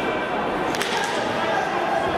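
A single sharp slap-like impact from the fighters' exchange on the mat, about a second in, over steady crowd chatter and shouts echoing in a large hall.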